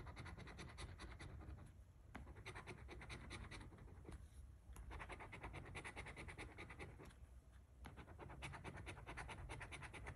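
A coin scraping the latex coating off a paper scratch-off lottery ticket: faint, quick back-and-forth scratching strokes in several runs, with brief pauses about 2, 4 and 7.5 seconds in.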